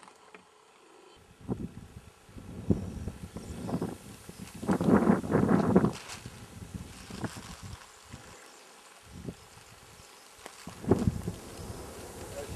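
Wind gusting across the camera microphone, an irregular rumble that swells and drops, loudest in the middle and again near the end.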